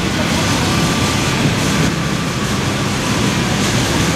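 Wind buffeting the microphone: a steady rushing noise with a flickering low rumble.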